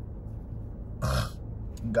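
A short, throaty vocal sound from a man about a second in, over a steady low hum.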